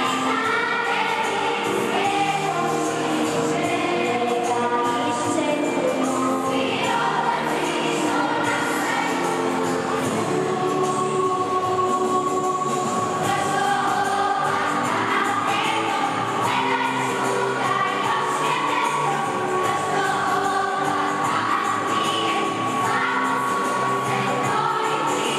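Children's choir singing a song, with one long held note in the second half.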